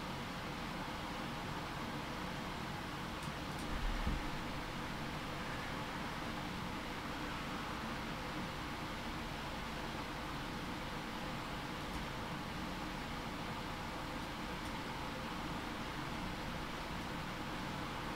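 Steady background hiss of room noise, with a soft low thump about four seconds in and a few faint clicks.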